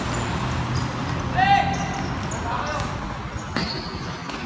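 Pickup basketball game on a hard concrete court: the ball bouncing, and a player's short high shout about a second and a half in, with a fainter call after it. A sharp knock comes near the end.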